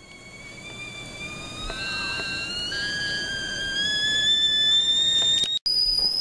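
Stovetop whistling kettle coming to the boil: its whistle starts faint and grows steadily louder, gliding slowly upward in pitch. Near the end it breaks off for an instant and returns higher and steady.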